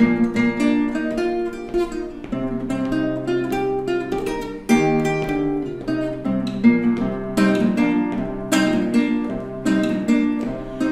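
Acoustic guitar fingerpicked on its own, an instrumental passage of the song's tune: a melody of single plucked notes over bass notes, with no singing.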